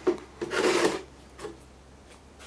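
Metal chassis of a rack-mount network switch scraped across a steel workbench top: a short rub, then a louder rasping scrape lasting about half a second, and a faint one after it, over a low steady hum.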